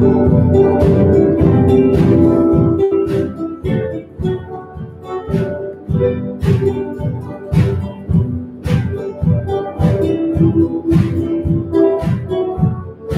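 Live instrumental music from a small ensemble. It is full and loud at first, then after about three and a half seconds thins to separate, evenly spaced notes.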